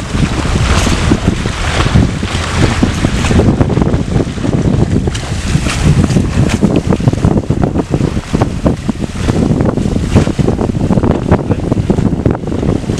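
Gusty wind buffeting the microphone over the rush of water from a boat under way, with uneven, choppy bursts throughout.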